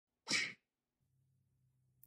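A single short breathy burst, a person's sharp breath noise, starting about a quarter of a second in and lasting about a third of a second. A very faint low hum follows.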